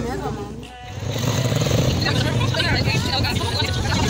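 Busy town street traffic with people's voices, loud and steady after a brief drop about a second in.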